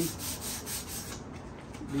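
Hand sanding of a wooden Yamaha bookshelf speaker cabinet: sandpaper rubbed back and forth in quick strokes, pausing about halfway through.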